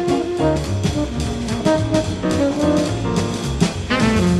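Jazz quartet of tenor saxophone, piano, double bass and drums playing, with a moving bass line and steady drum and cymbal strokes under sustained melody notes.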